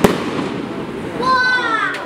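UFO Plus 36-shot firework cake: an aerial shot bursts with one sharp bang right at the start, and its sound dies away over the following second. Near the end a person's voice cries out, falling in pitch.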